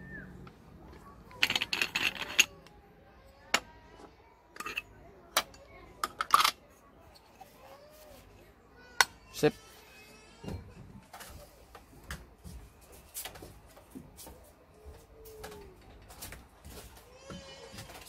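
Moka pot being taken apart: sharp metal clinks and knocks as its base, funnel filter and top section are handled and set down on a glass tabletop and kitchen scale. There is a quick run of clatter about two seconds in and single knocks spread through the rest.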